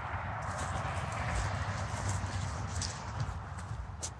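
John Deere 140 garden tractor's single-cylinder engine running at idle with a fast, even low pulse.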